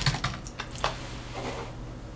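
Computer keyboard keys clicking: a quick run of several key presses in the first second, then a few faint clicks.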